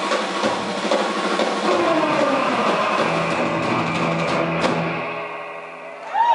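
Live surf rock band: electric guitar over drum kit and bass guitar, dying down near the end.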